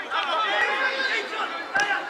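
Several overlapping voices of footballers and onlookers calling and chattering on an open pitch, with one sharp knock near the end.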